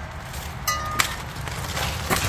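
Large wind chimes being knocked by hand: a chime rings with several clear tones about two-thirds of a second in, and a sharp clack follows at about one second.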